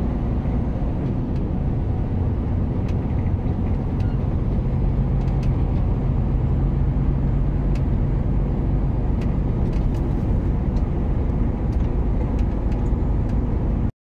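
Truck engine and road noise heard from inside the cab while driving at speed: a steady low rumble that cuts off suddenly near the end.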